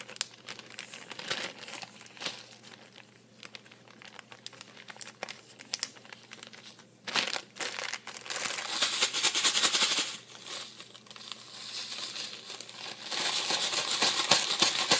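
A clear plastic bag of reindeer food mix crinkling as it is handled: light scattered rustles at first, then rapid, louder bursts of crinkling from about seven seconds in as the bag is shaken.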